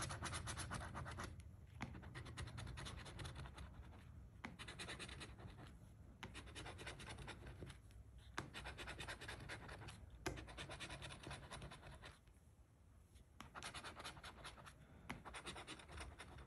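A coin scraping the latex coating off a scratch-off lottery ticket, faint and quick, in runs of rapid strokes broken by short pauses, with a longer pause about three-quarters of the way through.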